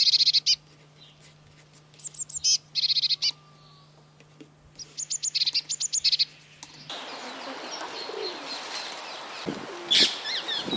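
A small bird chirping in quick high-pitched runs: one short burst at the start, two more around the second and third seconds, and a faster string of chirps from about five to six and a half seconds. A steady low hum runs underneath until about seven seconds in, when a broad hiss takes over.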